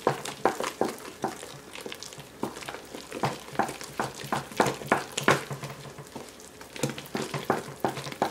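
Wooden spoon stirring thick mashed potato in a stainless steel pot, with irregular knocks and scrapes of the spoon against the pot, a few a second.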